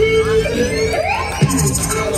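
Instrumental hip-hop beat: a held synth note with rising electronic glides over a bass line, and a deep bass drum hit about one and a half seconds in.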